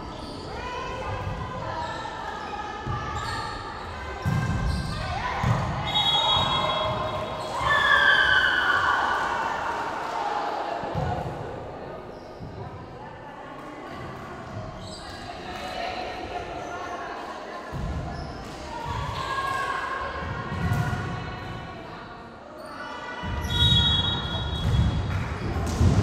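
Youth volleyball play in a large sports hall: the ball is struck and bounces on the court with dull thumps. Players' voices call and shout, and the hall makes them ring.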